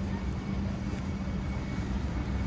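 Steady low rumble of city street traffic, with a constant low hum underneath.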